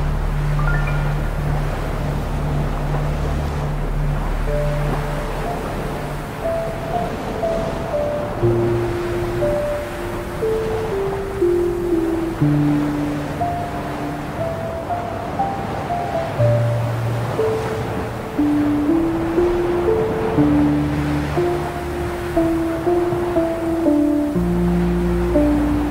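Slow ambient music: long held bass notes under a slow melody of sustained single notes, over a steady wash of ocean surf.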